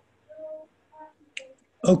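A faint voice in short fragments, then a single sharp click about one and a half seconds in, before a voice starts speaking loudly near the end, all over video-call audio.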